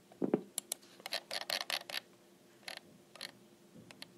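Soft clicks and taps of a computer keyboard and mouse as text is moved around on screen, a quick cluster about one to two seconds in and a couple more near three seconds, after a brief low thump just after the start.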